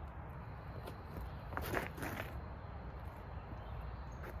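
Faint footsteps on a dry, leaf-littered dirt path, with a few louder steps about one and a half to two seconds in, over a low steady outdoor rumble.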